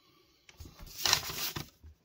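Quiet at first, then a brief rustle about a second in as fingers work fine wood dust into a glue-filled gap in a wooden knife handle.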